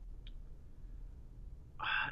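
A pause in conversation: a low, steady hum of room tone with one faint short click about a quarter second in, then a man starts speaking near the end.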